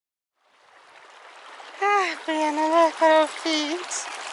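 Shallow creek water running over a pebbly bed, fading in from silence, with a high voice calling out in four drawn-out sounds from about two seconds in, louder than the water.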